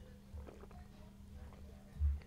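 Quiet, soft low gulps of wine being swallowed, repeating every few tenths of a second over a faint steady hum.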